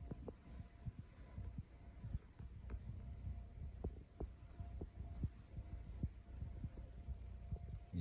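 Faint, irregular low thumps and knocks of handling noise as the recording phone is bumped and moved about, over a faint steady hum.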